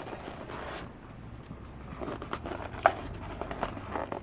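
Latex modelling balloons being handled and tied by hand: soft rubbing of rubber against rubber and fingers, with a couple of small clicks about three seconds in.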